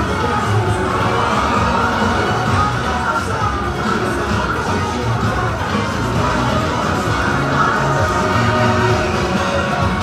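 Parade music playing over loudspeakers, with a crowd cheering and children shouting over it.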